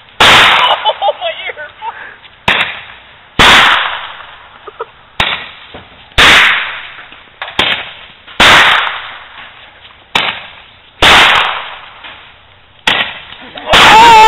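Roman candles firing: a run of sharp, loud pops, about one every two to three seconds, each loud one led by a softer pop just under a second before it.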